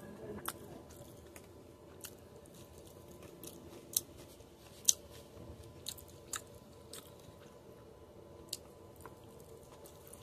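A person chewing a mouthful of rice and beef, close up, with irregular sharp wet mouth clicks; two louder clicks come about four and five seconds in.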